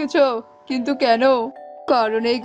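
A character's voice speaking in Bengali over background music, with steady, chime-like held notes underneath. The voice pauses briefly near the end while the notes carry on.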